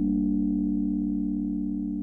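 A held synthesizer chord of low, steady tones at the close of a deep house track, slowly fading out.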